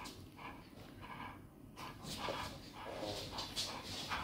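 A large black dog making short, irregular play noises while tugging on a toy in a person's hand in a game of tug-of-war.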